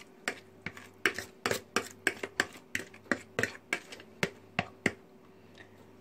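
A run of sharp, light taps, about three to four a second, as a plastic container is knocked and scraped by hand to empty grated potato mixture into a frying pan; the taps stop about five seconds in.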